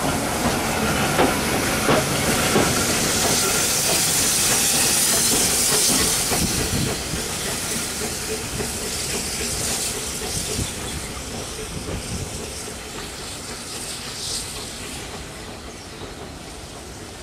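Passenger coaches rolling past with wheels knocking over rail joints, then the SECR P Class 0-6-0 tank engine No.323 "Bluebell" passing with a loud hiss of steam, the sound fading as the train draws away.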